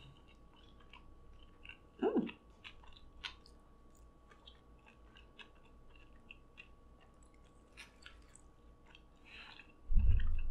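Close-miked mouth sounds of a person chewing a mouthful of Flamin' Hot Cheeto-crusted fried chicken sandwich with the mouth closed: soft, wet clicks throughout. There is a brief 'mm' hum about two seconds in.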